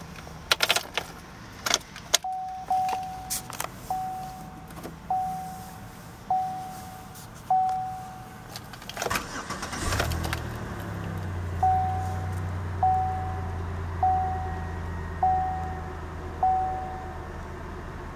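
Keys jangling and clicking into a 2009 Chevrolet Impala's ignition, then the car's warning chime dinging about once a second. About nine seconds in the engine cranks briefly and starts, then idles steadily with a low hum while the chime keeps dinging.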